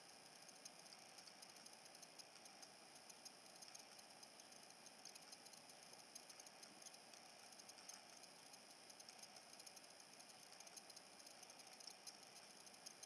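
Near silence: faint room tone with light, scattered ticks.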